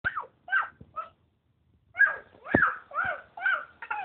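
A small child's short high-pitched shrieks, about seven in quick succession, each one falling in pitch, with a brief pause after the third.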